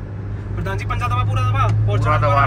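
Low steady drone of a Mahindra Scorpio N's engine and road noise heard from inside its cabin as it accelerates in a drag run, growing louder about half a second in, under a man's excited shouting.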